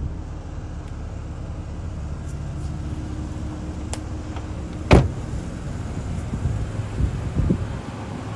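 A car door shut with one sharp, solid thud about five seconds in, over a steady low hum, then a few light knocks near the end.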